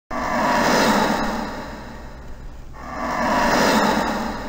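Two swelling whooshes, a rush of noise that rises and falls twice, the second peaking near the end: an intro sound effect.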